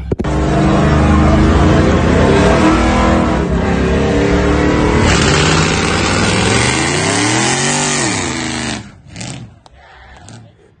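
Car engine held at high revs during a burnout, with the rear tyres spinning on pavement and the tyre noise growing from about halfway through. Near the end the revs climb and fall, and the sound cuts off sharply just before nine seconds in.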